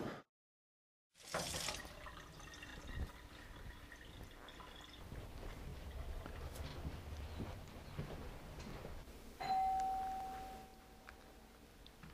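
A doorbell chimes once about nine and a half seconds in: a single clear tone that starts sharply and dies away over about a second. Before it there is only a short silence and then faint background noise.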